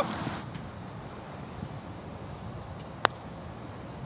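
A single sharp click of a putter striking a golf ball about three seconds in, over a faint steady outdoor background.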